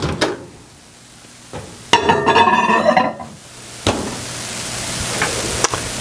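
A microwave oven being loaded and started: a click as it opens, a louder burst of handling about two seconds in, then the microwave running with a steady low hum and a hiss that slowly grows.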